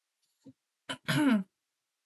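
A woman clears her throat once, a short voiced ahem about a second in, preceded by a faint click.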